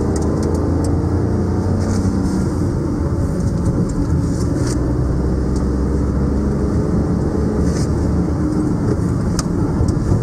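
Car driving at a steady speed, heard from inside the cabin: a steady low drone of engine and road noise.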